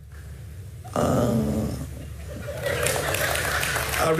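A short vocal sound about a second in, then a studio audience clapping from near the end.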